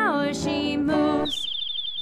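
Children's song music with a sung note sliding down, then the music stops about a second and a quarter in and a quick twittering run of about a dozen high bird chirps follows, a bird sound effect.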